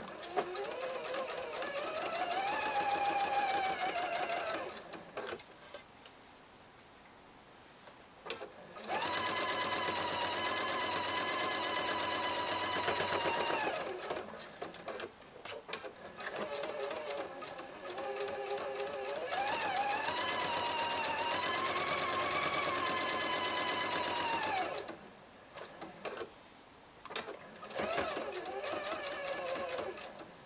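Electric sewing machine topstitching fabric in four runs, the longest about nine seconds, with short pauses between. The motor's whine climbs in pitch as it speeds up and drops away as it stops.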